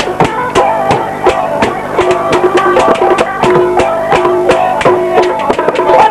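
Live Punjabi folk band music without vocals: a drum beats a steady, fast rhythm of about four strokes a second under a repeating instrumental melody of short held notes.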